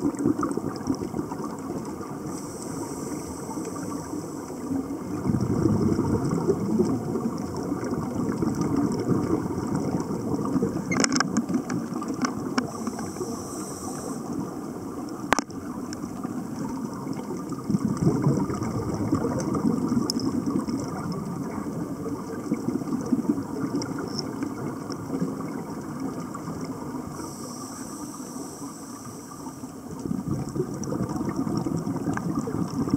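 Underwater sound around scuba divers: a steady low rumble, with three bursts of bubbling hiss from divers' exhaled regulator bubbles and a few sharp clicks.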